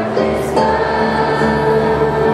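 Middle-school chorus of boys' and girls' voices singing together, holding long notes.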